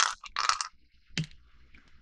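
Small hard objects being handled: a short rattle and rustle, then a single sharp click about a second in.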